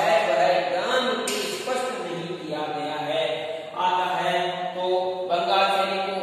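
A man's voice talking steadily in Hindi, in a lecturing delivery.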